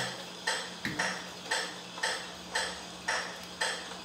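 Metronome ticking at an even pace, about two clicks a second, over a faint steady hum.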